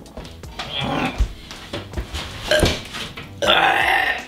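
A person burping after gulping down a carbonated drink: a few short sounds, then one longer, louder burp near the end.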